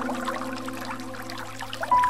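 Running water trickling and gurgling, with soft held music tones fading low beneath it and a new note coming in at the end.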